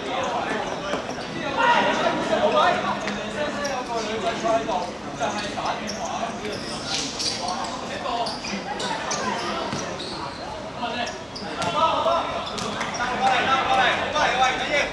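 Players shouting to each other during a football match, with the thud of the ball being kicked now and then.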